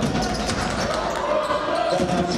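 Live basketball game sound in an arena: a ball bouncing on the hardwood court with scattered knocks, over a steady hum of voices from players and crowd.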